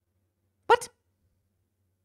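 A woman's single short, high-pitched exclamation, "what?", about a second in; otherwise near silence.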